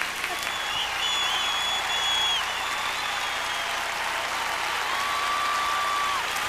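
Large arena audience applauding steadily, with a couple of long, high whistles held over the clapping.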